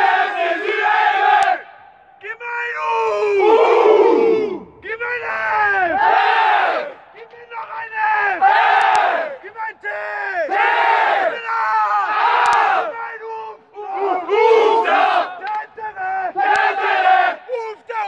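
A group of men chanting together in a victory celebration: long drawn-out wordless calls that swoop up and down in pitch, repeated in phrases of a few seconds with short pauses between them.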